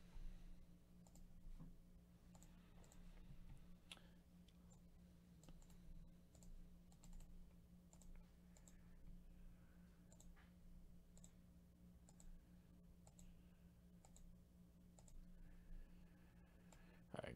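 Faint, irregular clicks of a computer mouse and keyboard, about one a second, over a low steady hum.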